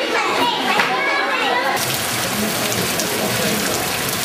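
Children's voices talking in a room, then about halfway through an abrupt switch to a steady, loud hiss of water.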